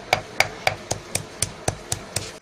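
A pestle pounding pieces of dried ginseng root in a mortar in a steady rhythm of about four sharp knocks a second, each with a short ring.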